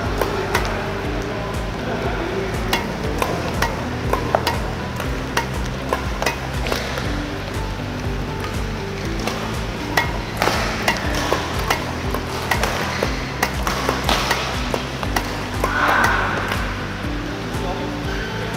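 Badminton racket strikes on shuttlecocks in a multi-shuttle net-tap drill: sharp clicks coming about once or twice a second, over background music.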